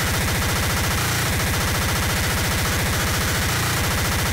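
Speedcore-family electronic music (splittercore/extratone): a distorted kick drum pounding so fast that the hits run together into an almost continuous buzz, over a harsh, noisy electronic wash.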